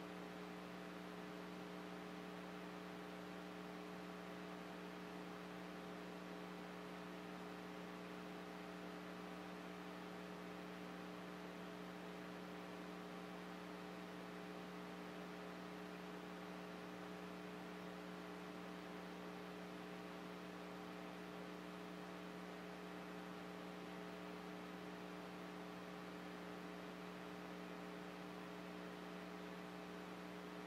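Steady electrical mains hum: a low, unchanging tone with a stack of evenly spaced overtones over faint hiss, with no other sound.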